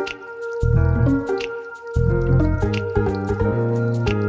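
Light instrumental background music with a bass line, held notes and short percussive ticks; the bass drops out briefly twice.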